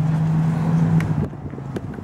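A motor vehicle's engine humming steadily, fading away after about a second, with a couple of light clicks.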